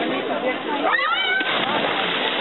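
Voices of people swimming in open water, with a high-pitched squeal that sweeps up and then falls about a second in, over a steady wash of water and chatter.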